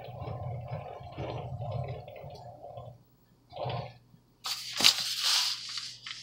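A plastic piping bag filled with buttercream crinkling and rustling as it is squeezed and handled. The rustle is loudest for the last second and a half, with a brief rustle just before it.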